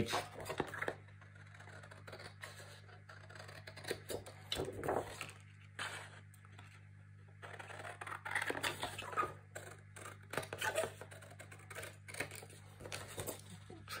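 Quiet, intermittent rustling and scraping of a printed cardstock page being handled and its white margin cut away in short bursts, over a faint steady low hum.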